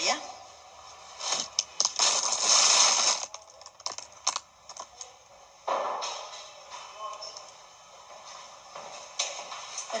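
Rustling and knocking of things being handled and moved about, loudest from about one to three seconds in, with several sharp clicks. A softer rustle follows around six seconds in.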